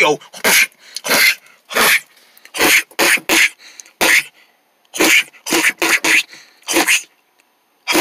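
A person making about a dozen short, sharp non-word vocal noises, grunts and mouth sound effects for a puppet fight, with a brief lull near the end.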